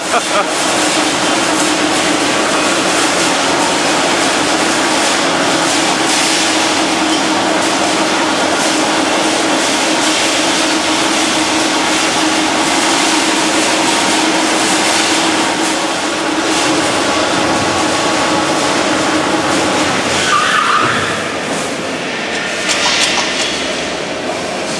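Loud, steady factory machinery noise in a wire-processing plant, a constant din with a steady hum under it, easing slightly about twenty seconds in.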